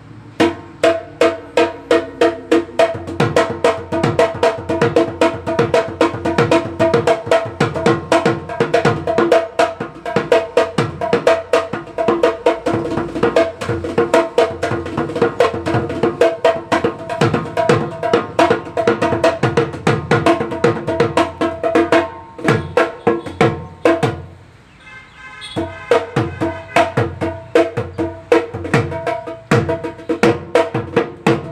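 Assamese Bihu dhol, a double-headed barrel drum, played with a stick on one head and the bare hand on the other in a fast, driving rhythm, each stroke ringing with a pitched drum tone. The playing breaks off briefly about 24 seconds in, then starts again.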